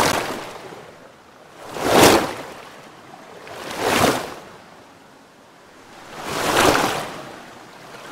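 Surf-like rushing noise that swells and fades four times, roughly every two seconds, with nothing pitched in it.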